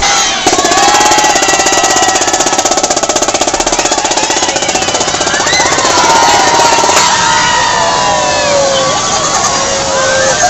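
Children shouting and calling out over a loud, fast rattling pulse. The rattling starts sharply about half a second in and cuts off abruptly about seven seconds in, leaving the children's shouts.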